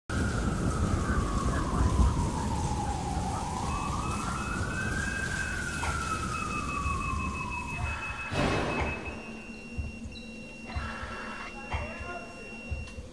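Intro of a pop ballad recording: a siren-like wailing tone slowly falls, rises and falls again over a steady rain-like hiss. About eight seconds in a rush of noise sweeps through, and the rest is quieter, with a faint high held tone.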